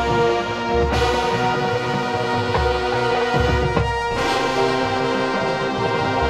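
High school marching band playing, led by brass holding sustained chords, which change about one second in and again about four seconds in.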